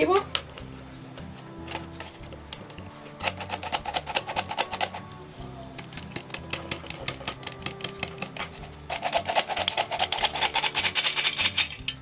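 Hand-held metal flour sifter being worked over a bowl, its mechanism clicking rapidly in three bursts, the longest near the end, as flour is sifted through.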